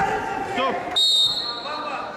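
A referee's whistle blown once, a short high blast about a second in, marking the end of the wrestling bout as the clock runs out. Shouting voices run underneath.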